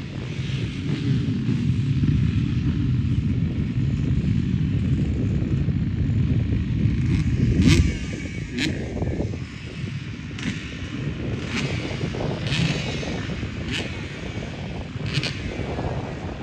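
Several motocross bikes running at the start line, heard from a distance as a low rumble that eases off about eight seconds in. Several sharp clicks follow in the second half.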